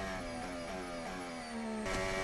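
Formula 1 car's turbo-hybrid V6 engine heard faintly through the onboard radio feed, its note falling steadily as the revs drop. Near the end it cuts abruptly to a steady engine note.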